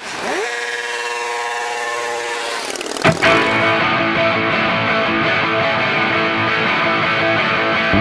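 Intro of a rock and roll song. For about three seconds there is a gliding, engine-like whine, then a sharp hit, and electric guitar plays on steadily.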